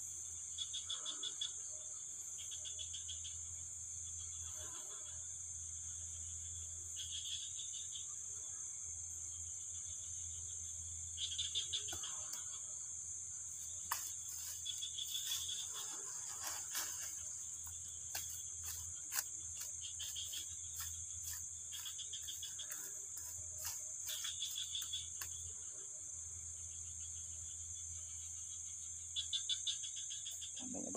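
Night-time chorus of insects and frogs: a steady high-pitched insect drone with short pulsed chirping calls every few seconds. In the middle come scattered crackles and clicks, dry bamboo leaves and stalks rustling as they are handled.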